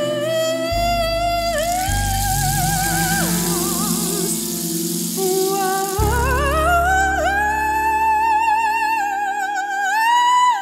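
A woman sings long held notes with a wide vibrato over sustained low piano and keyboard notes. From about two to six seconds in, a rainstick adds a soft rattling hiss. About six seconds in, the voice slides up to a high sustained note.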